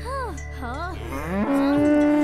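Cartoon cow mooing: short wavering calls that rise and fall, then one long steady moo starting about one and a half seconds in.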